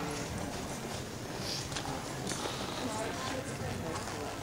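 Hoofbeats of a horse walking on the soft dirt footing of an arena, close by, a few sharper hoof strikes about a second and a half to two and a half seconds in, over indistinct background voices.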